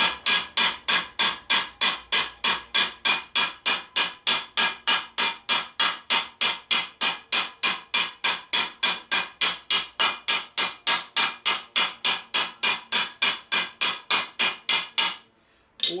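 Planishing hammer, its rounder face, striking a curved sheet-metal piece on a stake. It is a steady, even run of light metallic strikes, about four a second, each with a short ring. The strikes smooth dents out of the surface, and they stop about a second before the end.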